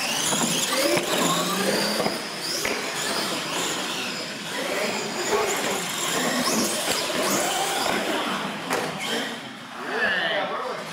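R/C monster trucks racing across a concrete floor, their motors whining and rising and falling in pitch as they speed up and slow down.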